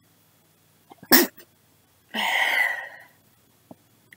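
A woman sneezes: a sharp, loud burst about a second in, then a second, longer breathy burst about a second later.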